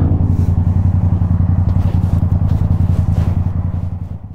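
Motorcycle engine idling with a steady, even low pulse, starting to fade out near the end.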